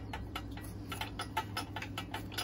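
A tool belt clicking, a light, regular ticking at about five clicks a second as the wearer works.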